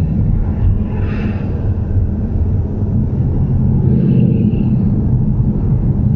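Car engine and road noise heard from inside the cabin as the car speeds up from a slow roll, a steady low rumble. A brief hiss comes about a second in.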